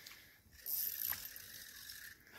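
A fishing reel ratcheting while a hooked grass carp is played near the bank. The rasping starts a little over half a second in, has a single sharper click partway through, and runs on more faintly.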